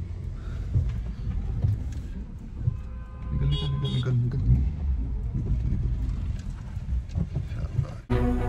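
Car cabin noise while driving: a steady low rumble of the engine and tyres on the road.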